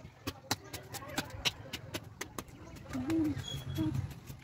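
Sharp, irregular clicks and cracks, a few a second, as a bamboo pole is split lengthwise into slats with a machete. A dove coos briefly about three seconds in and again near the end.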